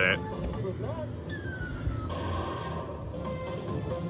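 Arcade background: electronic game music and sound effects over a steady low hum, with a falling electronic tone about a second in.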